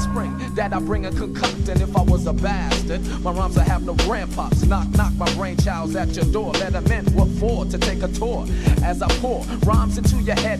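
Boom bap hip hop track: rapping over a steady drum beat.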